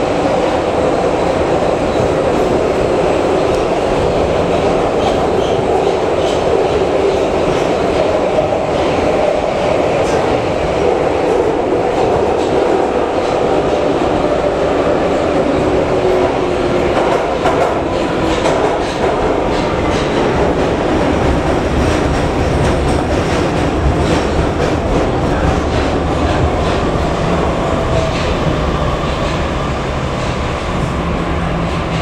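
Metrowagonmash metro train running at speed in a tunnel, heard from inside the car: a steady loud rumble of wheels on rails with a faint wavering whine. Occasional clicks of the wheels over rail joints can be heard, and the low rumble grows near the end.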